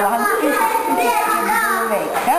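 Young children's voices chattering, with more than one voice at a time.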